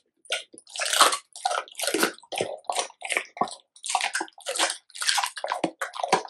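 A black Labrador retriever eating raw food, a raw chicken head among it, with wet smacking chewing and licking sounds coming in quick irregular bursts about two to three a second.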